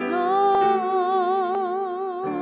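A worship song being sung: a single voice holds one long note with vibrato over a steady sustained chord from the accompaniment.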